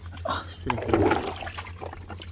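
Shallow rock-pool water splashing and running off as a plastic sack is lifted out of it, loudest about a second in, with a brief wordless voice sound mixed in.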